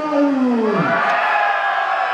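Announcer's voice over a public address, stretching a rider's name into a long call that falls in pitch, then a second, higher call held long.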